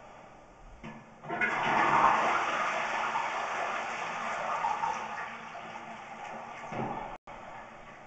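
A wall-hung toilet flushing: a sudden rush of water starts about a second in, is loudest at first, and tapers off over the next several seconds, sending water down the drain line that is under inspection.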